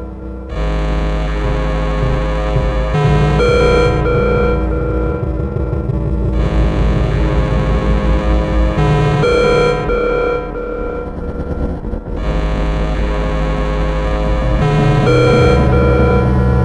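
Experimental electronic music: layered steady oscillator tones over a low drone. The stack of tones shifts every few seconds.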